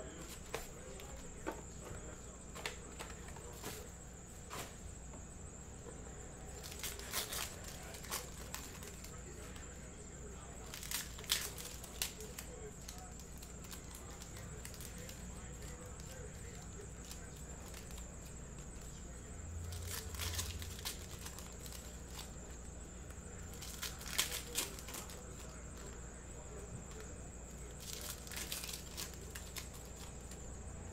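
Foil trading-card pack wrappers being torn open and the cards handled. The crinkling and tearing comes in short clusters a few seconds apart over a steady low background hum.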